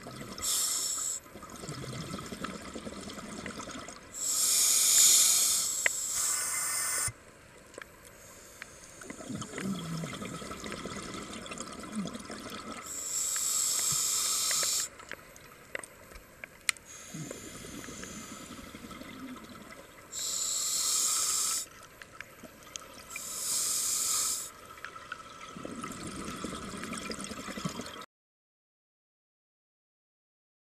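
Scuba regulator breathing underwater: several loud hissing breaths, each a second or two long, with a quieter bubbling rumble of exhaled air between them.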